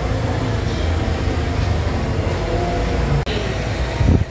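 Steady low rumble of coin-operated washing machines running in a laundromat, with a brief dropout about three seconds in.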